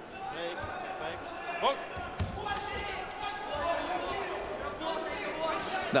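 Boxing arena ambience: the crowd murmuring and calling out, with a few dull thuds from the ring, the sharpest about two seconds in.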